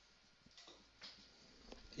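Near silence broken by a few faint, short scratchy strokes of a marker pen on a whiteboard, about half a second and a second in.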